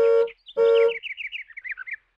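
Two short, equal car-horn beeps, a cartoon 'beep beep' sound effect, followed by a quick run of bird chirps that step down in pitch for about a second.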